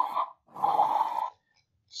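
A stock animal growl sound effect playing back from a computer: two harsh growls, each under a second, the second ending about halfway through.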